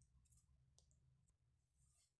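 Near silence: a low steady hum with a few faint clicks as a spoon tips powder into a glass bowl.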